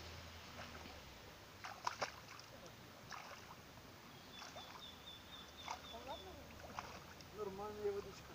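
Faint sloshing and splashing of legs wading slowly through shallow, still water, with two sharper splashes about two seconds in.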